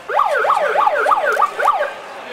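Electronic siren in a fast yelp, its pitch sweeping quickly up and down about three times a second. It starts and stops abruptly and is louder than the speech around it.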